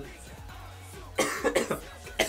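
A man coughing several times in quick succession, starting a little past halfway, a cough from a cold. Faint pop music plays underneath.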